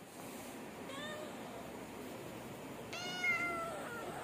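A domestic cat meowing twice: a short, faint meow about a second in, then a longer, louder meow near the end.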